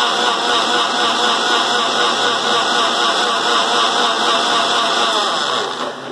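Electric mixer grinder with a steel jar running steadily at speed, blending a liquid sattu drink. The motor starts to wind down at the very end as it is switched off.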